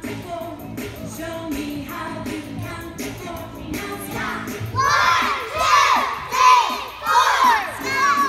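Recorded pop music with a steady beat, then about halfway through a group of young children shouting together in several loud, high, swooping bursts.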